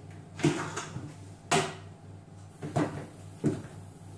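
The plastic lid of a Monsieur Cuisine Connect food processor being unlocked and lifted off its stainless steel bowl: four sharp clunks spread over a few seconds, the first two the loudest.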